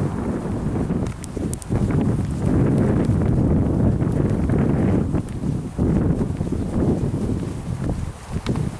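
Wind buffeting the camera's microphone in gusts, with the dull thud of footsteps on the path underneath.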